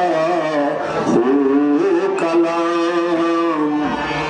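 Kashmiri Sufi music ensemble playing a sustained melody with gliding, held notes, led by harmonium and bowed and plucked string instruments.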